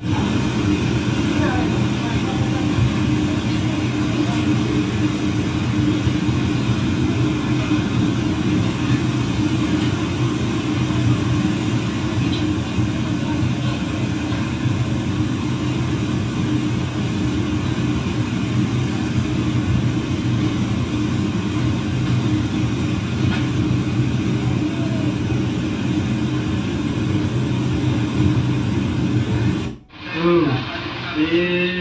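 Floodwater of a swollen river in torrent, rushing and churning with a steady, deep rumble that does not let up.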